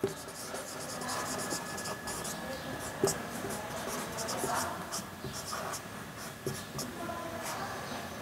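Marker pen writing on a whiteboard in quick, short, faint strokes, with a light tap about three seconds in.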